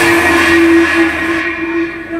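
A single long held note from the Bhaona musical accompaniment, as the drumming stops and the cymbal ringing fades out about one and a half seconds in.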